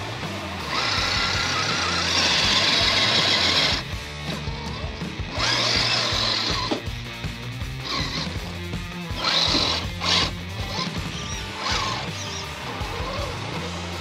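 Redcat RC crawler's electric motor and geared drivetrain whining in bursts as the truck claws up a muddy bank: one long burst early, then shorter and shorter ones, over background music.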